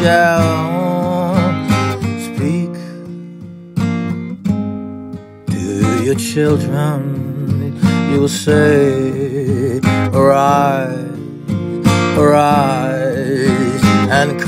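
Acoustic guitar strummed and picked, with a voice holding wordless, wavering notes over it. The playing thins to a few plucked notes about four seconds in, then the strumming and the voice come back.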